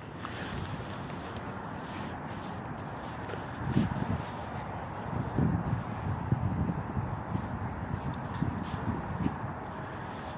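Wind buffeting the microphone in irregular low gusts over a steady outdoor background hiss.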